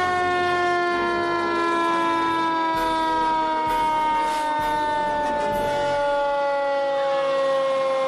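Fire engine siren winding down: one long, steady note that slowly falls in pitch throughout.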